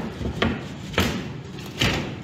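Three sharp knocks, about half a second, one second and nearly two seconds in, the last the loudest, from handling and moving about under a stainless-steel kitchen exhaust hood.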